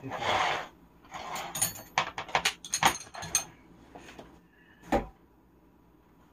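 Steel combination wrenches clinking and jangling against each other in a wrench set as one is picked out, a quick run of sharp clicks, followed by a single dull thump.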